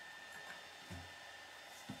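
Faint steady high hum of room noise, with two soft low bumps, about a second in and near the end, as a small plastic Lego motorbike model is handled and set down on a wooden table.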